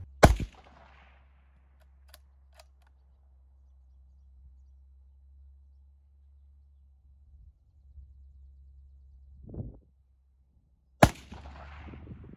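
A single rifle shot from a scoped bolt-action hunting rifle fired off a bench rest: one loud, sharp crack just after the start, with a short echo trailing off.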